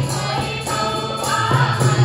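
A mixed group of men and women singing a folk song together, accompanied by hand drums with sharp strokes and a harmonium.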